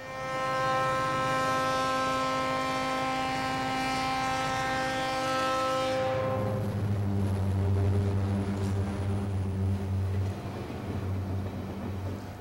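Diesel locomotive air horn sounding one long steady blast for about six seconds as the train approaches. After the horn cuts off, the locomotive's diesel engine rumbles low as the train passes.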